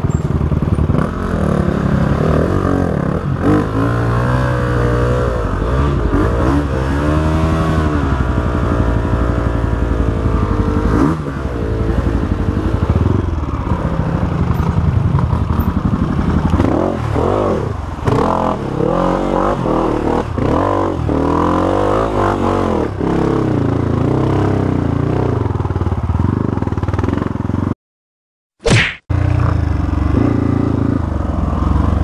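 Honda CRF 250F trail bike's single-cylinder four-stroke engine revving up and down under load on a steep, rutted forest trail climb, with the clatter of the bike over rough ground. Near the end the sound cuts out for about a second, broken by a single sharp click.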